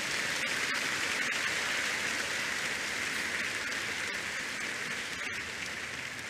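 A large congregation applauding together as praise: steady massed clapping that slowly dies down near the end.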